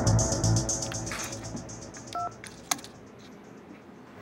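Background music with a pulsing beat fades out over the first second. About two seconds in comes a single short electronic telephone beep, then a sharp click.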